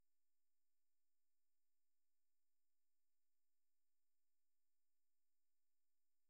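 Near silence: only a very faint steady electrical hum.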